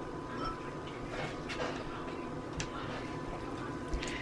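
Quiet kitchen sounds from a pan of vegetables in broth on the stove: a low steady background with a few faint light clicks, and a soft knock near the end as a spatula goes into the pan.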